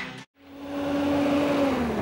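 A jeep's engine running, fading in after a brief silence, a steady hum whose pitch drops near the end.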